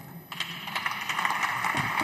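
Applause: many hands clapping, starting about a third of a second in and growing slightly louder.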